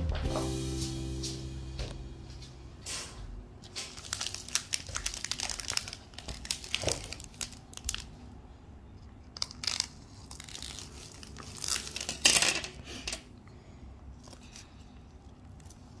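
Clear plastic wrapping crinkling and rustling in irregular bursts as it is handled and pulled at, loudest about twelve seconds in. Background music fades out in the first two seconds.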